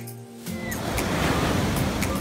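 The last note of some music fades out in the first half second. Then the steady rushing wash of ocean surf breaking on a beach comes in and grows louder.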